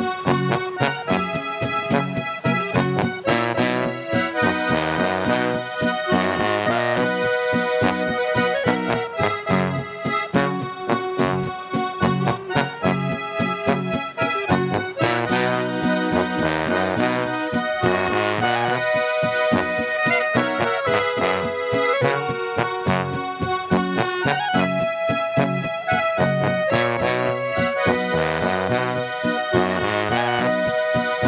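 Instrumental Alpine folk music played live: a Styrian button accordion (Steirische Harmonika) leads, with clarinet and guitar, in a steady, even beat.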